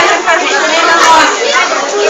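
Chatter of many voices talking over one another.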